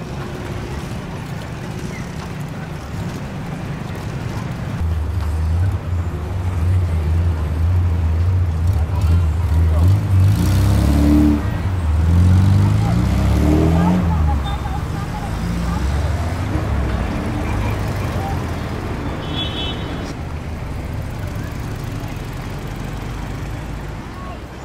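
Motor vehicle engine running and passing close by, loudest in the middle and revving up before it fades, over a background of street crowd chatter.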